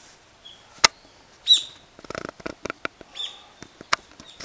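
Sharp sharp clicks, the loudest just under a second in, then a short harsh bird call at about a second and a half and a second call a little after three seconds, with scattered clicking and rustling between them.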